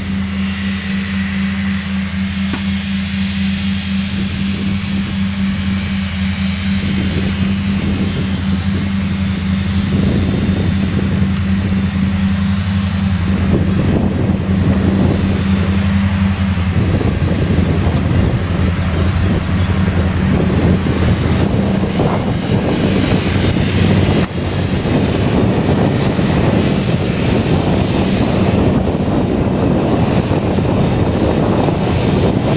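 Steyr 6175 CVX tractor engine running steadily under load as it drives a Pöttinger NOVACAT front and rear triple mower combination, with the rush of the spinning mower discs cutting grass. The cutting noise grows louder in the second half.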